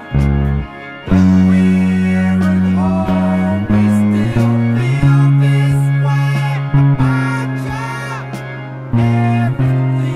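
Music: an electric bass guitar plays long held low notes that change every second or so, under singing voices.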